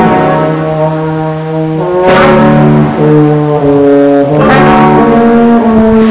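Small wind band of clarinet, trumpet, trombone and low brass playing a sacred march in held chords, the chord changing about every two seconds.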